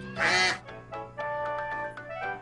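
A cartoon duck's loud quack about a quarter-second in, over a held keyboard chord, followed by a simple bouncy children's-show tune of short keyboard notes.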